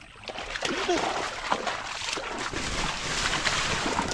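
Water splashing and sloshing as hands grope through a shallow, muddy stream, feeling for fish.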